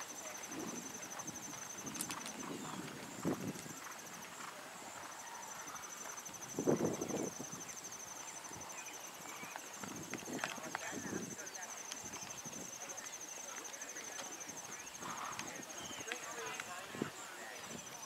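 Hoofbeats of a horse trotting and walking on sand arena footing, with a louder sound about seven seconds in. A high, pulsing buzz runs on and off in the background.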